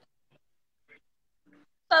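Near silence in a pause between voices, with two faint, very short sounds in the middle, then a voice starting to say "bye-bye" at the very end.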